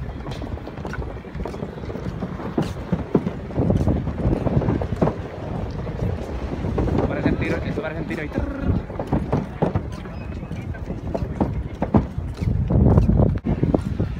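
Footsteps knocking on the deck of a floating pontoon bridge as people walk across it, with wind on the microphone and voices nearby.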